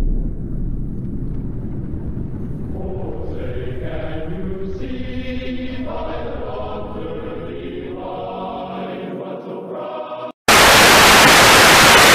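A distorted recording of a national anthem, with choir-like voices over a low rumble, cutting off abruptly about ten seconds in. After a moment of silence comes a loud, steady TV-static hiss, the station going off the air.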